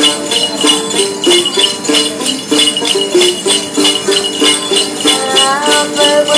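Đàn tính lute plucked in a running melody over a cluster of jingle bells (xóc nhạc) shaken in a steady beat of about three strokes a second, the accompaniment of Tày–Nùng then singing. A singing voice comes in near the end.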